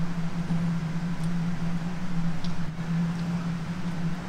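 A steady low hum throughout, with a few faint clicks of a chocolate-coated ice cream bar being bitten and chewed.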